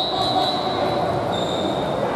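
Basketball shoes squeaking on a hardwood gym floor: one squeak at the start and another near the end, over steady gym background noise.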